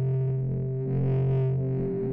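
Intro music: a sustained, distorted electric guitar chord ringing out, with a second layer swelling in about a second in.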